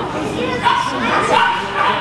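Dog barking in short barks, with people's voices talking underneath.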